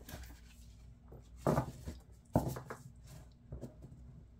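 A deck of tarot cards being shuffled by hand: a soft papery rustle, with two louder shuffles of the cards about one and a half and two and a half seconds in.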